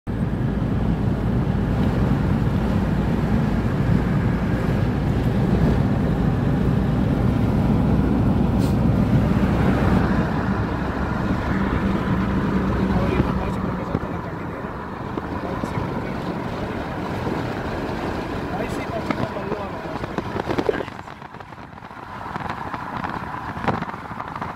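Car road noise heard from inside the cabin while driving a paved mountain road: a steady low rumble of engine and tyres, heavy for the first half and lighter after that, dropping further near the end.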